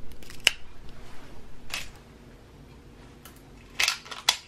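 A few short, sharp clicks from a bamboo skewer being handled and laid down on a granite countertop. The loudest click is about half a second in, and there is a louder pair near the end.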